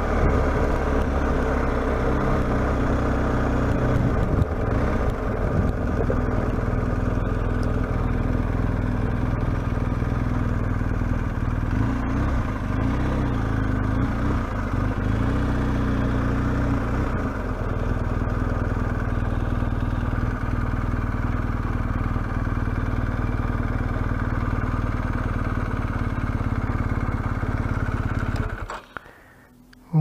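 Motorcycle engine running at low road speed, with wind noise on the rider-mounted microphone; its pitch rises and falls with the throttle a few seconds in and again around the middle. The engine sound cuts off abruptly near the end as the bike stops.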